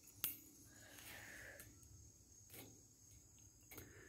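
Near silence, with a faint steady high trill of crickets. One sharp click just after the start, and a few fainter ticks, as pliers twist the stiff aluminium fence wire.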